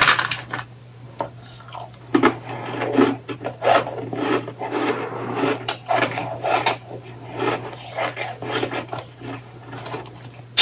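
Powdery, packed ice being chewed: a long run of soft, irregular crunches, after a chunk is broken off the ice mound by hand right at the start.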